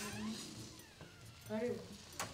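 A person's short, high, drawn-out vocal call about one and a half seconds in, rising and falling in pitch.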